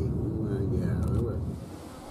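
People talking over the low rumble of a car driving along a street. The sound fades out in the last half second.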